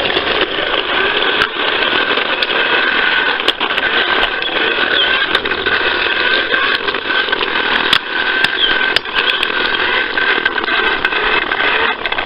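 Fisher-Price toy push lawnmower running as it is pushed along: a steady mechanical noise with a thin constant tone and scattered sharp clicks.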